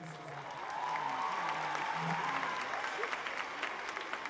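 Concert audience applauding, growing louder over the first second and then holding steady.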